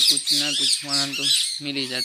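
Birds chirping and squawking in quick repeated calls over a man talking.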